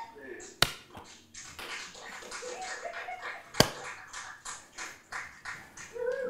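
Two sharp smacks about three seconds apart, amid a person's voice.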